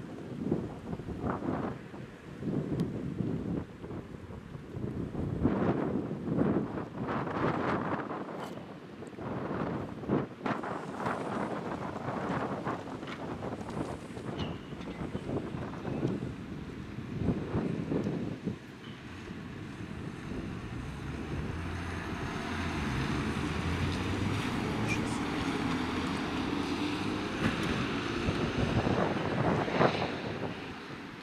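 Wind gusting on the microphone over street noise. From about twenty seconds in, the steady engine of a small Mercedes fire-service vehicle grows louder as it pulls out and drives off.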